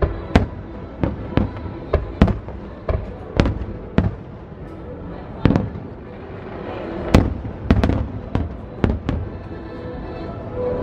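Aerial fireworks shells bursting in a rapid run of sharp booms, one or two a second, each trailing off in a low rumble. The booms thin out briefly in the middle, then pick up again.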